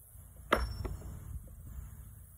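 A metal washer clinking: one sharp clink with a short high ring about half a second in, then two faint clicks.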